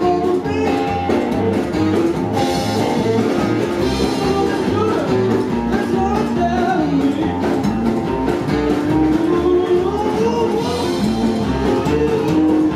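Live rockabilly band playing: slapped upright double bass, hollow-body electric guitar and drum kit keeping a steady beat.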